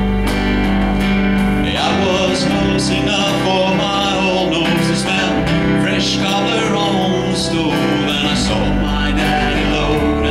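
Male voice singing a country ballad to strummed acoustic guitar.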